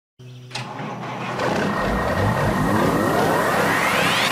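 Intro sound effect: a sudden hit about half a second in, then a rising whine of several tones climbing steadily in pitch, like an engine revving up, building toward the start of electronic music.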